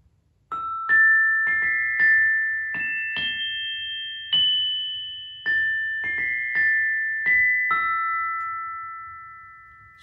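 Professional glockenspiel's metal bars struck with soft mallets, playing a slow phrase of about a dozen notes that climb and then come back down, each note left ringing. The last note dies away slowly.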